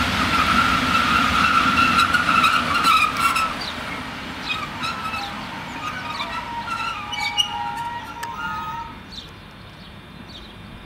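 DB Class 151 six-axle electric locomotive rolling slowly past, with a high metallic squeal from its running gear. The squeal holds one pitch for the first few seconds, then breaks into several shifting tones with small clicks as the engine slows to a near stop, and fades out about nine seconds in. Birds chirp at the end.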